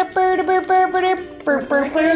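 A voice singing a short tune in a few held notes, with brief breaks between them.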